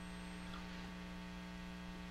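Steady low electrical hum with a row of evenly spaced higher overtones, unchanging throughout.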